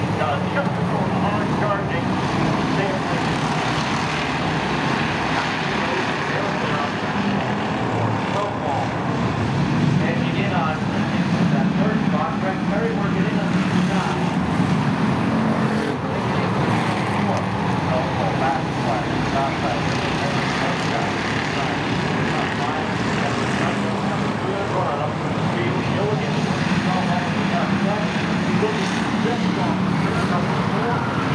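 A field of pure stock race cars running together around a short oval, their engines making a steady, dense drone as the pack laps, swelling a little about ten seconds in.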